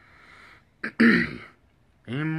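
A man clears his throat once, in a short loud burst about a second in.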